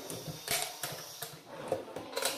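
A white laminated drawer being pulled open on its runners, with a couple of sharp clicks as it slides out.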